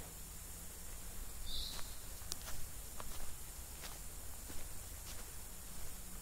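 Faint forest ambience: a low steady hiss with a few light, scattered clicks, and a brief high chirp about one and a half seconds in.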